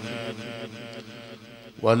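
Man's voice chanting Islamic devotional praise, trailing off quietly in a pause between sung lines, then coming back in loudly near the end.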